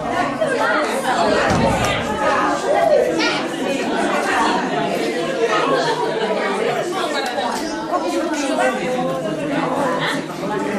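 Crowd chatter: many people talking at once, their voices overlapping so that no single speaker stands out.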